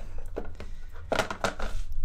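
Brief, quiet fragments of a man's voice between sentences, over a low steady hum, with some rustling as the handheld camera is swung around.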